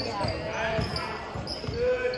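Indoor basketball game: overlapping voices of players and spectators calling out, with a basketball thumping on the hardwood court.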